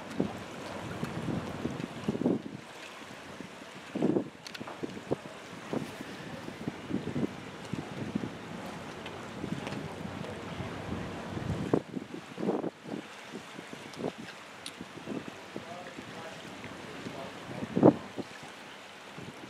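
Wind buffeting the microphone in irregular gusts and bumps, the loudest just before the end.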